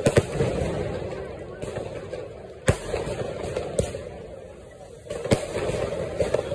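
Diwali sky-shot aerial fireworks bursting overhead: sharp bangs at the start, about two and a half seconds in, once more weaker, and again near the end. Each bang is followed by a rumbling, crackly tail that fades away.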